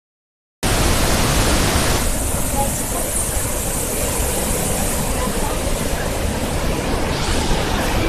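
White-water rapids of the Berdan River rushing over rocks: a loud, steady rush of water that cuts in just after the start.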